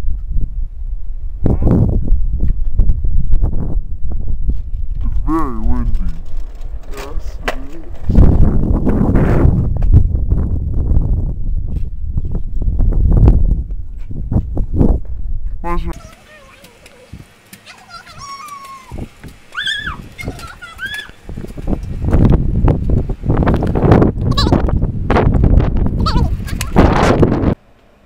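Girls' voices laughing and squealing over a loud low rumble, with a quieter stretch about two-thirds of the way through.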